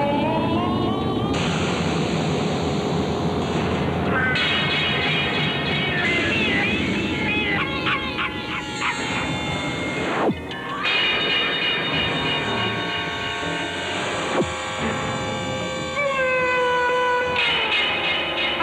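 Dramatic film soundtrack: a dense, loud music score with sliding, swooping shrieks and held tones. Two sharp hits come a few seconds apart past the middle.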